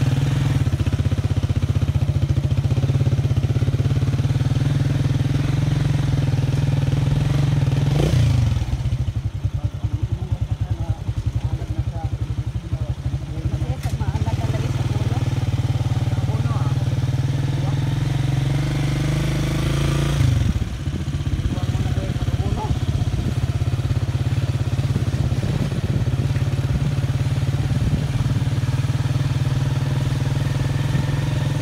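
Small motorcycle engine running steadily while riding along a farm road. Its note drops briefly about eight seconds in and again about twenty seconds in.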